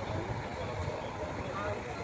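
Outdoor ambience: indistinct voices of people near the path over a steady low rumble.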